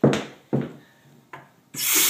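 A few short scraping knocks, then about three-quarters of the way in a bathroom sink faucet is turned on and water runs hard into the drain with a loud hiss.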